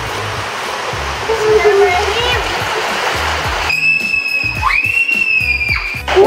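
Rushing water of a water slide with children's short cries, over background music with a steady beat. About four seconds in the water noise drops away and long high-pitched screams take over.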